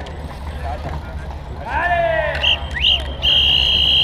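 A loud shout about halfway through, then a high-pitched whistle: a short note, a quick rising note, and a held note of about a second near the end. A steady low rumble runs underneath.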